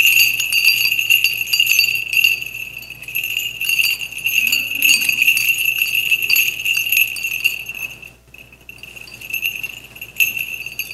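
Small bells on a swinging censer (thurible) jingling continuously as it is swung in incensing, with a brief break about eight seconds in.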